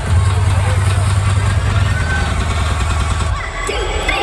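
Hard-trap electronic dance music over a festival sound system, heard through a phone's microphone: a loud, held bass drone in place of the beat, which cuts out about three and a half seconds in.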